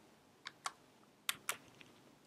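A few keystrokes on a computer keyboard: about six separate, light key clicks spread through two seconds of otherwise quiet typing pauses.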